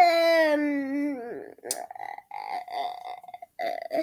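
A child's voice making one long drawn-out sound that falls steadily in pitch, then a string of short broken vocal sounds.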